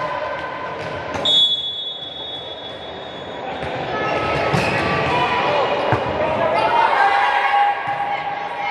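A referee's whistle blows once, a high steady tone about a second in that fades away over a couple of seconds, then a volleyball is struck with sharp smacks. Players' and spectators' voices echo through the large hall.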